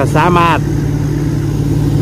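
P. Charoen Phattana 270 hp rice combine harvester's diesel engine running steadily as the machine works through deep paddy mud, a low, even engine sound. A man's voice speaks over it in the first half-second.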